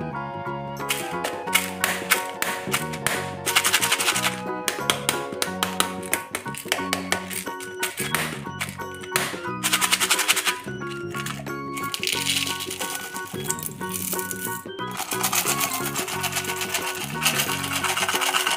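Background music over the rattle of small candy-coated chocolates in a plastic jar, with many dense clicks, and near the end a continuous rush as the candies pour out.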